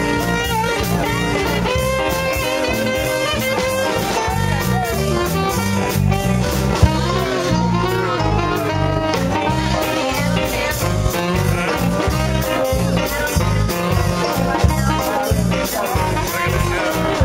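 Live band playing an instrumental passage: saxophone over electric guitar, keyboard, bass guitar and drums, with a steady beat.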